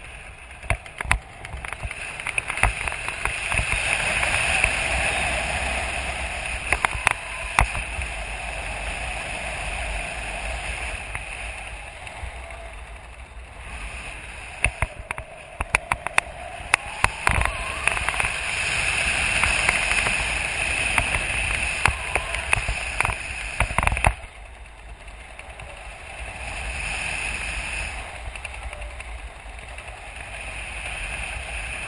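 Wind rushing over a helmet camera's microphone during a parachute descent under canopy: a steady, surging rush with frequent crackles and pops. It drops suddenly and grows quieter about 24 seconds in.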